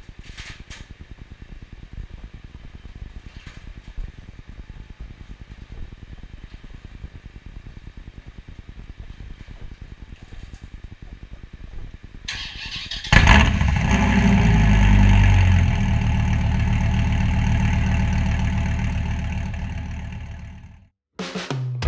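An electric garage door opener runs for the first dozen seconds. About 13 seconds in, the Dodge Viper's V10 cranks and fires, revs up briefly, and settles into a loud, steady idle that fades out near the end.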